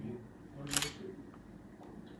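Quiet conversation between two men: low, brief voice fragments, with one short hiss about three-quarters of a second in.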